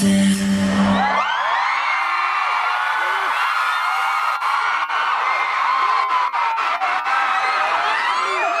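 Loud concert music cuts off about a second in. A large crowd of fans then screams and cheers, many high-pitched voices overlapping.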